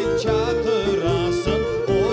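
Crimean Tatar folk ensemble of clarinet, violin, saz, keyboard and frame drum playing an ornamented melody with vibrato over a steady beat.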